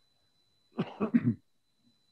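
A person coughing: a short burst of three or four quick coughs lasting under a second, about two-thirds of a second in.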